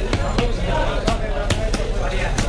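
A large knife chopping through a fresh Indian salmon fillet into a wooden chopping block: several sharp, unevenly spaced chops.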